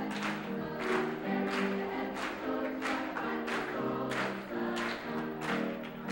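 High school choir singing a gospel-style song in harmony, with the singers clapping their hands on the beat, about three claps every two seconds.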